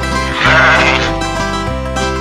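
Instrumental nursery-rhyme backing music with a single cartoon sheep bleat, a short 'baa' about half a second in.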